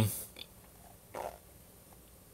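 A man's drawn-out hesitation 'um' trailing off, then a short breathy noise about a second in, over quiet room tone.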